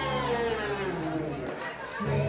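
Crowd chatter echoing in a large hall, with one drawn-out voice call that rises briefly and then slides down in pitch over about a second and a half.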